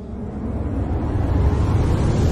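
A deep, low rumble swelling steadily louder: a soundtrack riser under the closing title card.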